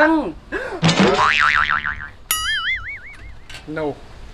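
Cartoon-style comedy sound effects: a wobbling upward sweep about a second in, then a sharp click followed by a springy "boing" whose pitch wavers and fades out over about a second.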